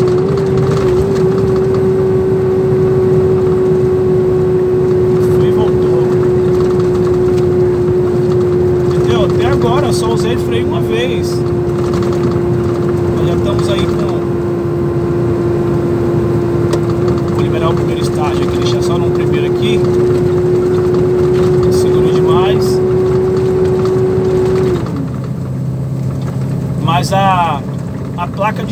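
Iveco truck engine with its engine brake applied on a long downhill, a steady high whine over the engine's drone. The whine drops away about 25 seconds in as the brake is eased off.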